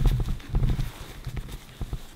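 A diaper being pulled open and its padding torn apart by hand: a quick run of crackles and rustles, densest in the first second and then thinning out.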